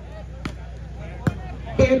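A volleyball struck twice by players' hands during a rally, two sharp slaps less than a second apart, the second louder.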